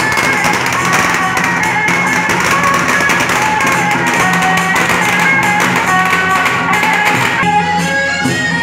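Loud festive procession music: sustained melody lines over a low drone, with rapid clashing percussion that drops out about seven and a half seconds in.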